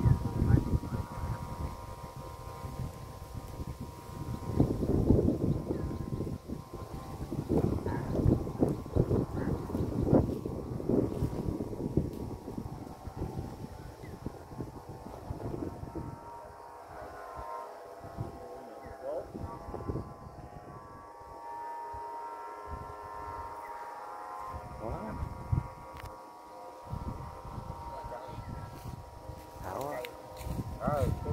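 Wind buffeting the microphone in gusts, strongest in the first half, with voices talking in the background and a faint steady hum underneath.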